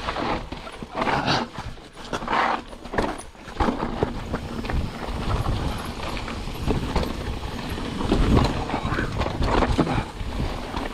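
Mountain bike riding down a rocky dirt singletrack: constant rumble and crunch of the tyres over dirt and stones, broken by frequent irregular knocks and rattles as the bike hits rocks and bumps.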